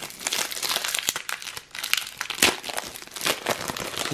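Panini Adrenalyn XL foil booster pack crinkling and tearing as it is pulled open by hand: a dense run of crackles with a few sharper snaps.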